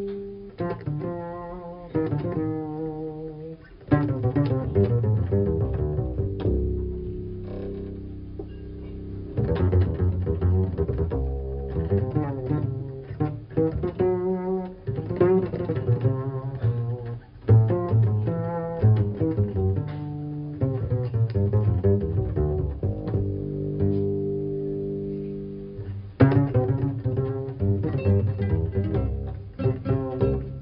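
Double bass played pizzicato in an unaccompanied-sounding jazz solo: phrases of plucked notes with short breaks between them.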